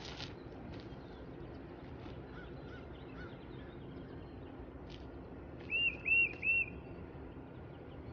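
A bird gives three short chirps in quick succession about six seconds in, each a quick rise and fall in pitch, with a couple of fainter chirps a few seconds earlier. Underneath is a faint steady background hiss with a few soft clicks.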